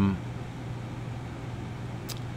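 Steady low background hum with a faint even hiss, the tail of a drawn-out spoken "um" ending just at the start.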